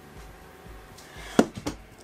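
A caulk tube set down on a workbench cutting mat: one sharp knock about one and a half seconds in, followed by a couple of lighter clicks.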